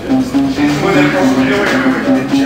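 Band music: guitar and bass playing a line of held notes that change every few tenths of a second.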